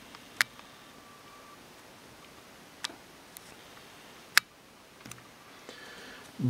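Five sharp, isolated clicks from the video camera being handled as it zooms in, the loudest about four seconds in, over quiet room tone.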